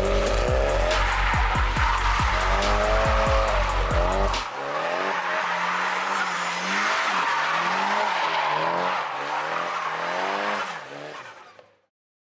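Bass-heavy music with a beat, which stops about four and a half seconds in. Then a Nissan SR20DET turbocharged four-cylinder engine revs up and down repeatedly, with tires squealing. The sound fades out near the end.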